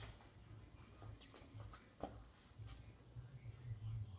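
Very quiet room tone with a faint low hum and a couple of small clicks, the clearest about two seconds in.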